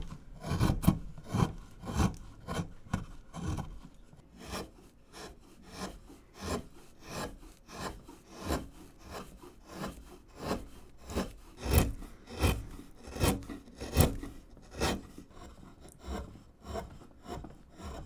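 Hand carving gouge slicing through basswood in short, repeated scraping cuts, about two a second, a few of them louder than the rest.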